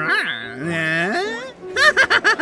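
A cartoon character's wordless, drawn-out vocalizing, its pitch sliding up and down, breaking into rapid laughter near the end.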